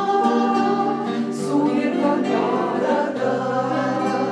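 Mixed ensemble of adult women's and young voices singing a Russian bard song in unison, accompanied by several acoustic guitars. The voices hold long notes over the guitar accompaniment.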